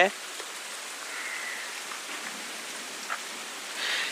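Steady, even hiss of outdoor background noise picked up by a wireless lavalier mic, with a tiny click about three seconds in.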